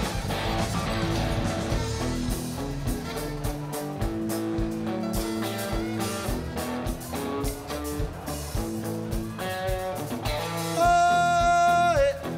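Live country-rock band playing an instrumental passage: fiddle and electric guitars over a steady drum beat. Near the end there is one loud, long held note.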